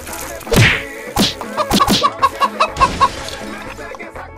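A loud whack about half a second in, then a chicken clucking in a quick run of short calls.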